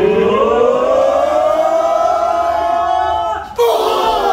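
A person's long drawn-out yell that rises in pitch, holds, and then sags. About three and a half seconds in it breaks off in a sudden burst of noise, and a second yell starts, falling in pitch.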